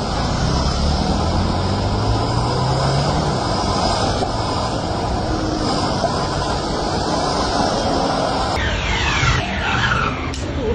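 Steady rushing of traffic on a rain-soaked road, with a vehicle engine hum that rises slightly in pitch in the first few seconds. About a second before the end, it gives way to squeaky swipes of a rubber squeegee on windscreen glass.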